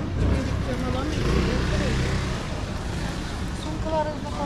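Street ambience of a busy pedestrian square: passersby talking near the microphone over a low rumble, which eases about two and a half seconds in.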